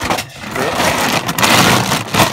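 Loud close rustling and crinkling as a plastic bag of dry dog food is gripped and handled. It is a dense scraping noise that starts abruptly and grows loudest about a second and a half in.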